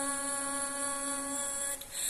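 A singer's voice holding one long steady note, which fades out near the end, followed by a short break.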